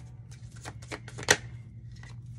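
Tarot cards being handled and shuffled: a run of light card clicks and snaps, the sharpest a little past halfway.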